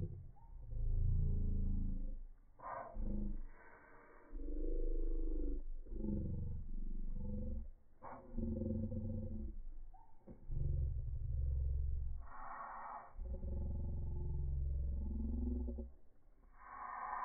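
Slowed-down audio track: deep, drawn-out pitched sounds in bursts of one to two seconds, with short hissing patches about three seconds in and again near twelve seconds.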